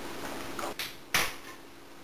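A few short knocks and clatters from a food can being handled over a baking dish, the loudest about a second in.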